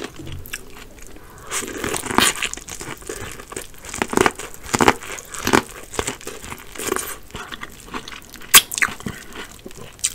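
Close-miked bites into corn on the cob: a run of sharp crunches as the kernels are bitten off, with chewing between bites. The crunches start about a second and a half in, and the loudest comes near the end.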